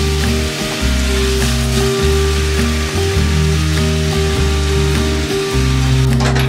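Meat and vegetable stir-fry sizzling steadily in a frying pan on a gas stove, heard under instrumental background music.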